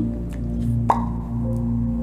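A single short water-drop plop about a second in, over steady background music with held drone-like tones.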